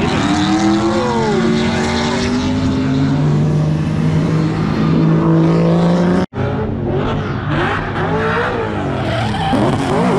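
Drift cars' engines revving up and down through slides, one holding high revs for a few seconds, over tyre screech. The sound breaks off briefly about six seconds in, then more revving follows.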